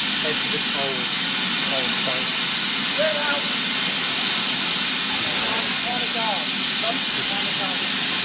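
BR Standard Class 4 steam locomotive 76079 standing with steam hissing steadily, with faint voices in the background.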